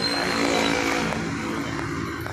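A motor vehicle's engine passing close by on the street, swelling in the first second and then fading away.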